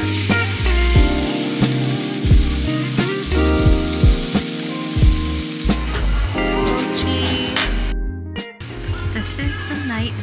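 Background music with a steady beat, and under it for the first five seconds or so the hiss of raw meat sizzling on a tabletop grill.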